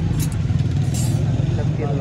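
An engine running steadily at idle: a dense low rumble with a fast, even pulse.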